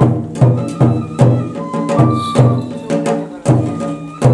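Shinto kagura music: a drum struck in a steady beat, about two and a half strokes a second, with a flute playing held notes over it.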